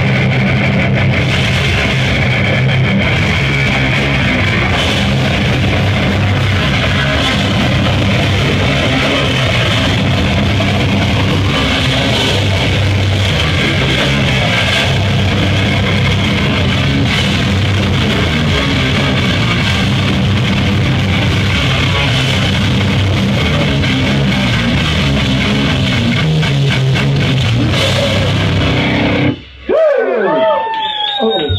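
A live rock band plays loudly, with electric guitar and drums. The song stops abruptly about a second before the end.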